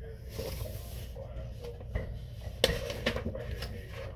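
Pages of a picture book being handled and turned: a soft rustle near the start, then a cluster of crisp rustles and taps a little past the halfway point.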